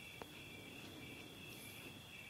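Crickets chirring faintly and steadily in the background, with one small click shortly after the start.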